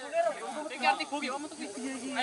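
Several people's voices talking over one another, with a faint hiss behind them.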